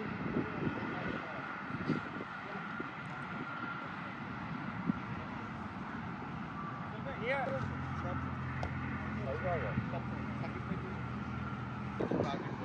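Outdoor ambience with distant, indistinct voices and a steady high whine. A low engine hum comes in a little past halfway and holds for about four seconds.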